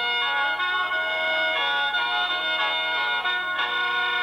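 Lao khaen, a bamboo free-reed mouth organ, being played: several reed notes sound together in steady chords, with the upper notes changing every so often.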